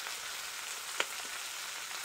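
Sliced beef intestines sizzling in oil on a large flat griddle pan: a steady frying hiss, with one short click about a second in.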